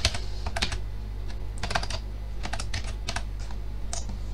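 Typing on a computer keyboard: short runs of a few keystrokes with pauses between them, over a steady low hum.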